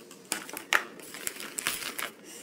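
Clear plastic wrapping crinkling and hard plastic Play-Doh accessory pieces clicking against each other as a hand shifts them, in a run of irregular short rustles and clicks.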